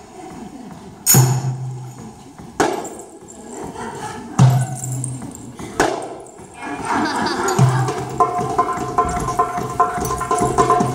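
Goblet drum (darbuka) solo: single sharp strokes, each leaving a deep ring, come about a second and a half apart. From about seven seconds in, a quicker, denser run of strokes follows.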